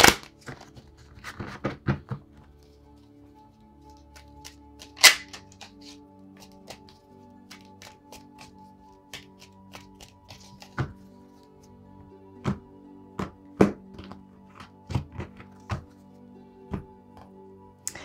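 A deck of Light Seers tarot cards shuffled by hand, with irregular taps and clacks of the cards, the loudest about five seconds in. Soft background music of held notes runs underneath from a few seconds in.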